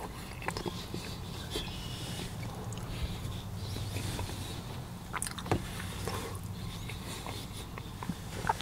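Close-miked chewing of a mouthful of cauliflower-crust pizza: soft wet mouth clicks, with a sharper one about five and a half seconds in, over a steady low hum.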